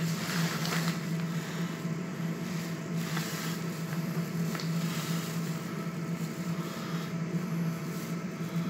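Kone EcoDisc lift humming steadily, heard from inside the car, with a few faint ticks.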